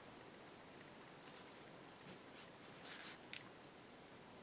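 Near silence with a few faint, short scratchy strokes, the loudest about three seconds in: a small paintbrush being drawn across a painted wooden cutout.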